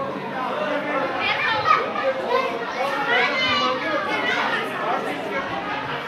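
Children's voices and chatter in a large, echoing hall.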